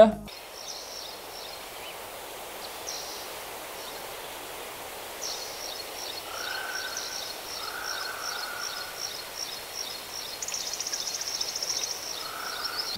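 Outdoor ambience: a steady even hiss with small birds chirping in quick repeated high notes from about five seconds in, two short lower calls in the middle, and a fast high trill near the end.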